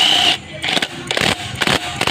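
Ratchet and socket turning a stator mounting bolt in a motorcycle's magneto cover: a loud burst at the start, then a run of irregular metallic clicks.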